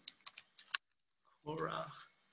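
Computer keyboard keystrokes: a quick run of light key clicks in the first second, typing a search word into a web browser's find box.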